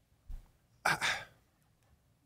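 A man sighing into a close studio microphone: one breathy exhale about a second in.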